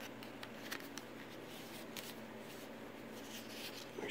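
Faint rustling and soft scattered ticks of paper and card pages and flaps being turned by hand in a small handmade junk journal.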